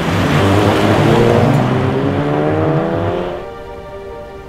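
Volkswagen Scirocco R's turbocharged four-cylinder engine accelerating hard, its note rising steadily, over background music. The car sound cuts off at about three and a half seconds, leaving only the music.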